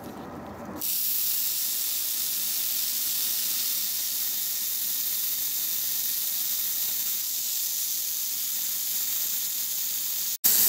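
Slow-speed dental handpiece running with a Sof-Lex abrasive disc, a steady hiss that starts about a second in, as the disc trims an acrylic provisional crown.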